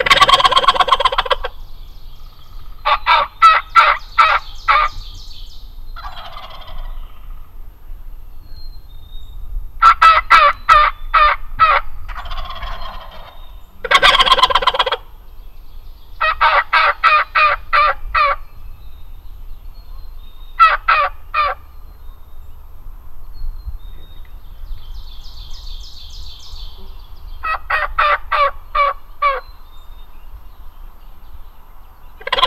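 Wild turkey jakes gobbling, the loudest gobbles right at the start and again about 14 seconds in. Between the gobbles come several short runs of rapid, evenly spaced yelps, about five notes a second.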